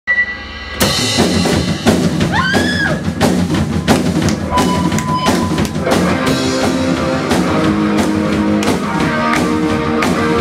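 Rock band playing live on drum kit and electric guitars. The full band crashes in together about a second in, with a short rising pitch glide a couple of seconds later and steady held guitar notes under the drums from about halfway through.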